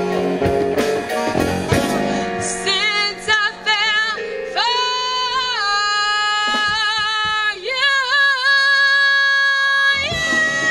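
A female jazz singer with a live band of congas, drum kit and keyboard. In the first seconds the band plays full with drum and conga hits; from about halfway the accompaniment thins out and she holds long, high notes with a wide vibrato.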